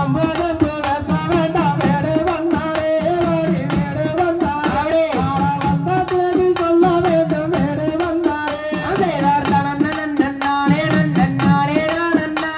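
Valli kummi folk song: a man sings the melody into a microphone over a drum beating a fast, steady rhythm, carried loud through a PA system.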